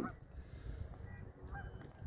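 A few faint, distant bird calls, short and high, in the second half, over a low rumble of wind on the microphone.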